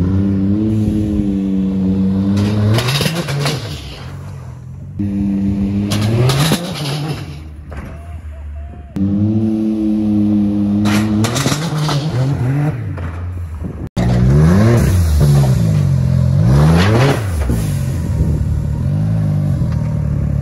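Can-Am Maverick X3 side-by-side's turbocharged three-cylinder engine revving in several bursts of throttle, its pitch rising and falling, as it drives up to a wheelie ramp.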